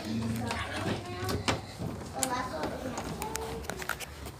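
Low, indistinct children's voices with scattered short knocks and clicks throughout.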